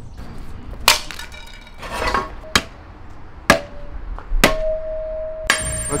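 A series of sharp metallic clanks about a second apart, the fourth followed by a ringing tone held for about a second, and a last bright, high-ringing hit near the end.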